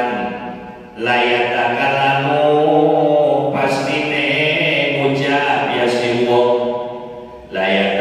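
A man chanting Arabic text in long, melodic held phrases, breaking for breath about a second in and again near the end.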